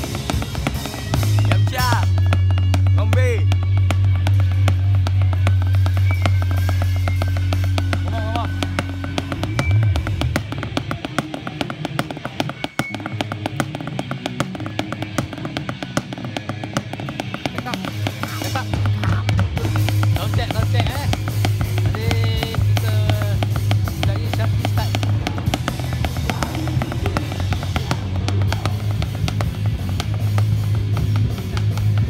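A live band playing loudly nearby, with rapid drumming and a heavy sustained bass line that drops out for several seconds in the middle and comes back. Voices are heard talking over the music.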